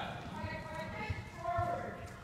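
Hoofbeats of a Friesian/Percheron gelding cantering on soft dirt arena footing, heard as irregular dull thuds, with a faint distant voice over them.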